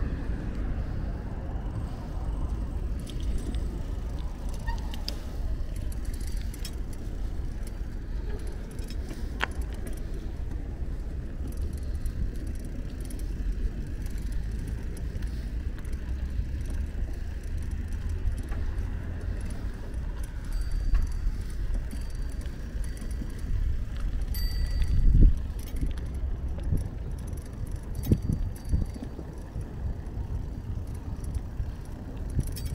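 Bicycle rolling over paving stones: a steady low rumble of tyres and wind on the microphone, with light rattles and clicks from the bike. There is a louder bump about 25 seconds in.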